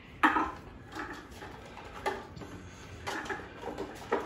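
Red plastic cups being handled, giving about four short knocks and rattles roughly a second apart, the loudest just after the start.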